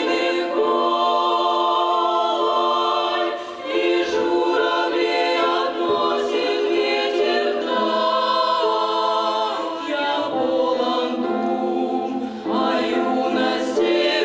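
Women's vocal ensemble singing held chords in several-part harmony. There are short breaks between phrases a little under four seconds in and again near the end.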